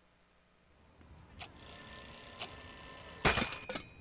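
An alarm clock ringing, starting with a click about a second and a half in; near the end there is a loud knock and the ringing stops just after.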